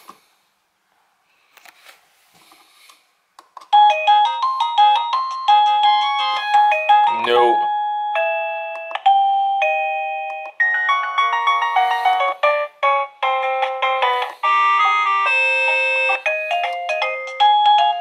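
Plug-in wireless doorbell chime unit playing electronic chime melodies: a few soft clicks as it is plugged in, then from about four seconds in a series of different tunes of clear beeping notes, one after another, as its ringtones play.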